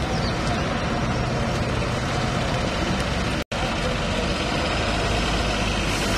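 Steady outdoor rumble of idling coach engines, with a low, even hum under a broad wash of noise. The sound cuts out for an instant about three and a half seconds in.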